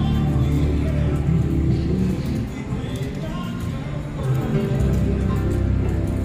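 IGT 'She's a Rich Girl' video slot machine playing its music and spin sounds while the reels spin, with a change in the tune about four and a half seconds in.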